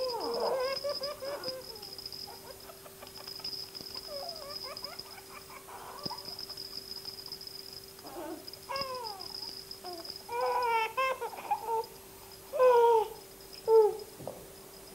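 Baby babbling in short bursts of high, gliding vocal sounds, with quieter pauses between them.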